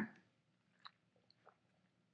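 Near silence with two faint, brief mouth clicks about a second in and again half a second later, from sipping and tasting a thick smoothie through a straw.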